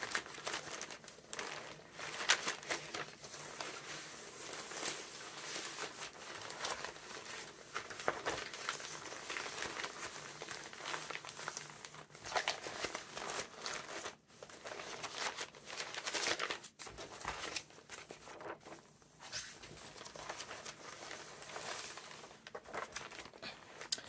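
Stiff, coffee-dyed paper pages of a thick handmade junk journal, with torn and inked edges, being riffled and turned by hand. They make a continuous crisp crinkling and rustling full of small crackles, with a few short breaks.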